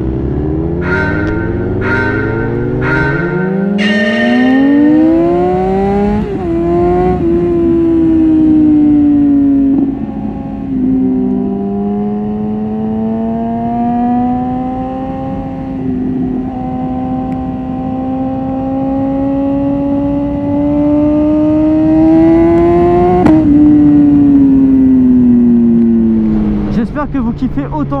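BMW S1000RR's inline-four engine accelerating hard: the revs climb steeply and drop at upshifts about six and ten seconds in, then hold a slowly rising cruise. Near the end the revs drop and fall away as the bike slows. Wind rushes over the microphone throughout.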